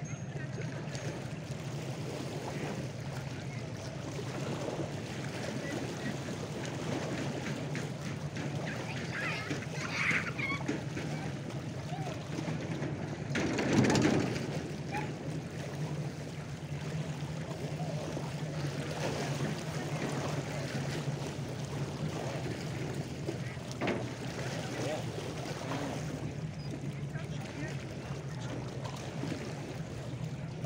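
Lakeside ambience: a steady low hum under indistinct distant voices and small waves lapping, with one brief louder swell of noise about halfway through.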